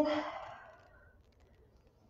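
A woman's voiced sigh: a held vowel that trails off into a breathy exhale, fading away within about a second, then near silence with a few faint clicks.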